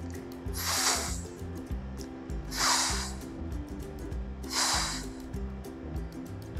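A woman's voice sounding the phoneme /f/ three times, each a breathy "fff" hiss about half a second long, evenly spaced, over soft background music.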